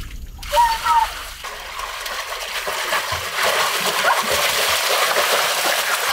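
Water splashing and churning as a person jumps into a small pool and swims through it; the splashing runs steadily and grows louder about halfway through.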